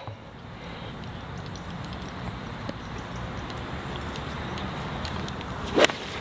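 A steady outdoor background hiss, then near the end a single sharp click of a nine iron striking a golf ball.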